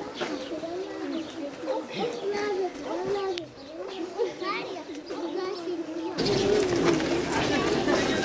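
A voice in a repeated rising-and-falling, sing-song cadence, each arc about half a second long. About six seconds in, after a cut, this gives way to a louder crowd of voices.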